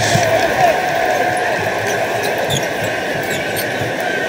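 A basketball being dribbled on a hardwood court over steady arena crowd noise, with a few brief high sneaker squeaks.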